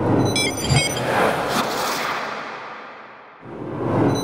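Whoosh sound effects of an animated logo sting: a broad, swelling whoosh with a few short glitchy clicks near the start, fading out about three and a half seconds in before a second whoosh rises near the end.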